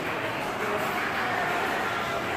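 Steady indoor background noise: an even hiss and rumble with no distinct events.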